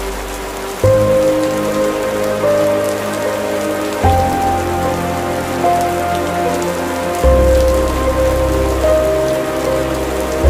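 Steady rain ambience layered over slow, dark classical-style instrumental music. Sustained chords change about every three seconds, each with a new low bass note.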